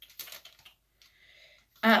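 Paper receipt rustling and crinkling as it is handled and unfolded, in a quick run of short clicky crackles and then a fainter rustle. A woman's brief "uh" comes near the end.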